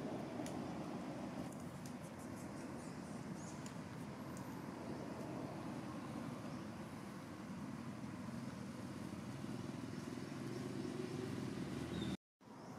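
Steady low outdoor rumble, like distant traffic, with a few faint clicks in the first seconds and one faint high chirp about four seconds in.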